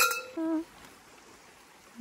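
A short spoken "hı" near the start, then a quiet, steady outdoor background with no distinct event.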